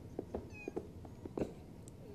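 Sneaker sole giving a brief high squeak on a polished floor about half a second in, among faint soft taps and rustles of movement.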